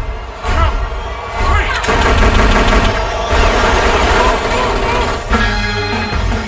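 Heavy, rapid gunfire: a dense fusillade of many shots mixed with dramatic music. It breaks off a little after five seconds in, as the music takes over.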